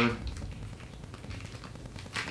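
Faint handling noise: a wiring harness in corrugated plastic loom rustling, with light clicks from its connectors as it is turned over in the hands.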